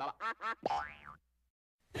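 Cartoon sound effects closing the Klasky Csupo logo: a few quick squeaky blips, then a springy boing that rises and falls in pitch, cutting off just after a second in.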